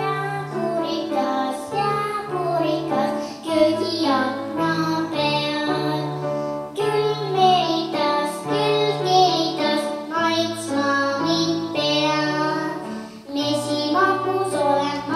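A young girl singing a solo children's song in Estonian into a microphone over instrumental accompaniment with a steady bass line. The singing and accompaniment start abruptly at the very beginning.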